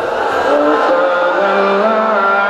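A man's voice chanting in long held notes that slide up and down in pitch, amplified through a public-address system with horn loudspeakers.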